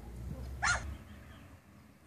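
A dog barking once, short and faint, about two-thirds of a second in, over a low rumble.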